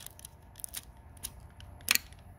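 Light plastic clicks and rattles of a green plastic oil bottle being pulled out of its holder on a Juki DDL-9000C sewing machine's arm, with one sharper click near the end.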